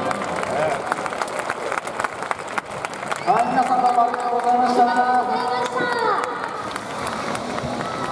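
Crowd clapping just after the music stops. About three seconds in, a voice calls out in one long drawn-out call lasting about three seconds.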